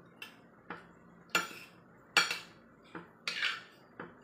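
Metal spoon and fork clinking and scraping against a plate while scooping rice: about six short, sharp clinks at uneven intervals, the loudest two near the middle.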